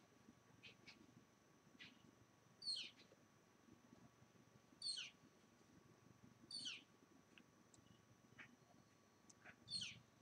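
A bird calling over near-silent outdoor background: four clear calls, each sweeping steeply down in pitch, about two seconds apart, with a few fainter short chirps between them.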